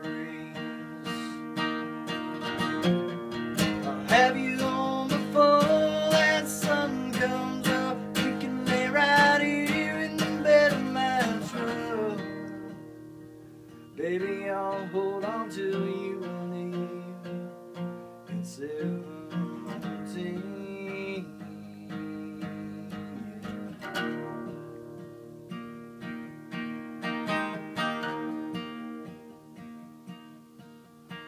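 Steel-string acoustic guitar played solo: a loud strummed passage that dies away about twelve seconds in, then a quieter picked passage that starts suddenly about two seconds later.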